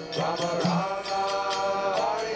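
Devotional music: a voice chanting in long, held notes, with light percussion strikes keeping a quick, steady beat behind it.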